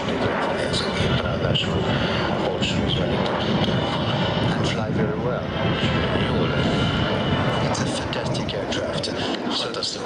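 Aero L-39 Albatros jet trainer, with its single turbofan engine, running steadily as it flies a slow display pass, with voices over it.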